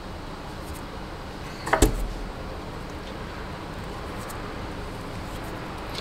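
A single sharp knock about two seconds in, over a steady low hum.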